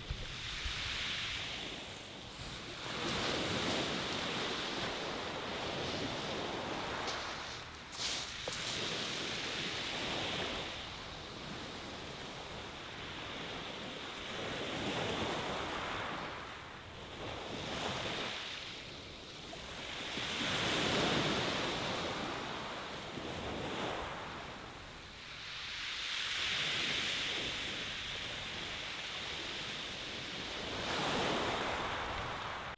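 Small waves breaking and washing up a shingle beach, swelling and fading every few seconds.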